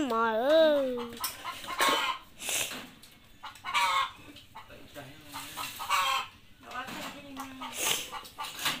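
Chickens clucking in a string of short calls, with one longer wavering call in the first second.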